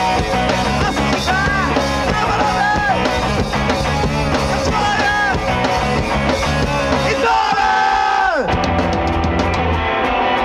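Punk rock band playing live, with electric guitars, bass and a drum kit, and a singer yelling and singing over them. About eight seconds in, a long held high note slides steeply down and the music changes to a sparser part.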